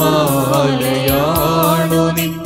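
Church choir singing a hymn: a winding vocal melody over a steady held low note.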